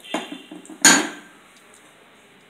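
A steel spoon knocks against the rim of a metal kadai to shake ground spice off into the oil: a light tap just after the start, then a sharp, loud clang with a brief ring about a second in.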